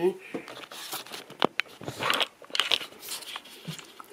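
Handling noise: rustling and crinkling with a few sharp clicks and knocks as the camera is picked up and turned, the loudest click about a second and a half in.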